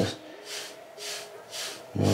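Stiff bristle hair brush swishing through short, unoiled curly hair in about five quick strokes, roughly two to three a second.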